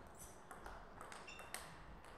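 Table tennis ball being played back and forth: several sharp clicks of the ball off bats and table, the loudest about one and a half seconds in, with a brief high squeak just before it.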